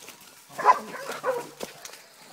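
A hog dog barking, two short rough barks a little over half a second apart.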